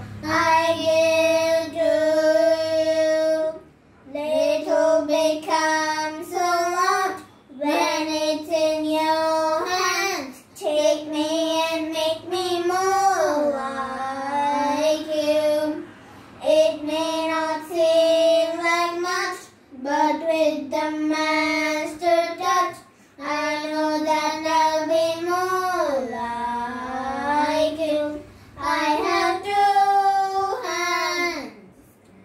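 Two children singing a song together, unaccompanied, in phrases of a few held notes with short breaths between.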